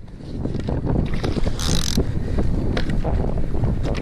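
Wind buffeting an action camera's microphone over choppy water beside a kayak, a dense low rumble broken by irregular knocks and a short burst of hiss near the middle.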